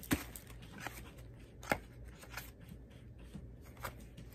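Stiff patterned paper cards being handled and flipped through, with faint rustles and two sharp taps about a second and a half apart.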